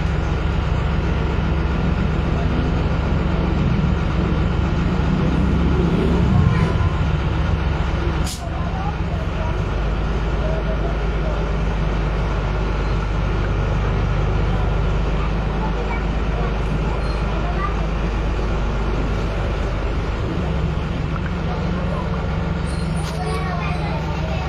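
City bus engine running while the bus drives, heard from inside the passenger cabin as a continuous low drone. The engine rises in pitch for a few seconds, then there is a sharp click about eight seconds in, and the drone settles lower and steadier.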